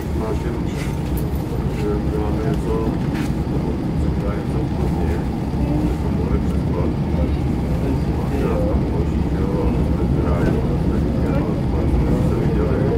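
Steady low running noise of a small diesel railcar heard from inside while it travels along the line, with indistinct voices of people talking in the background.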